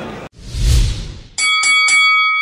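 Logo sound effect: a whoosh with a low boom, then a boxing bell struck three times in quick succession and left ringing.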